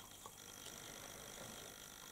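Near silence: faint room tone with a thin, steady high-pitched whine.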